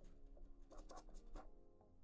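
Coin scratching the coating off a paper scratch-off lottery ticket: a quick run of short scratchy strokes about a second in. Faint background music plays under it.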